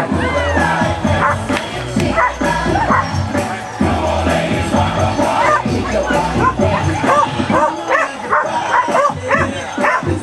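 A dog barking repeatedly in short, rapid barks over music playing through an outdoor PA loudspeaker.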